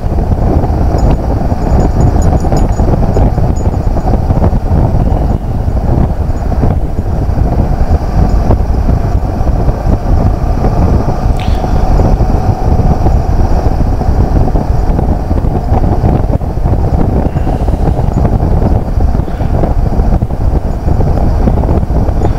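Riding a Suzuki V-Strom 650 motorcycle: a loud, steady rush of wind on the microphone, with the bike's V-twin engine and road noise running underneath.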